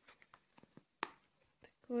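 Faint rustling and small clicks of a burger box being opened and handled, with one sharper click about a second in.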